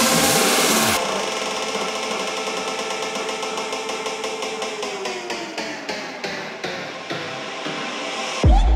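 Electronic dance music in a breakdown: about a second in the bass and kick cut out, leaving held synth chords. A synth line slides down in pitch midway, and a run of repeated hits builds toward the end.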